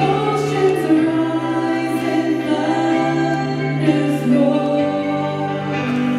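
Gospel worship music: a woman singing long held notes over sustained keyboard chords that change every couple of seconds.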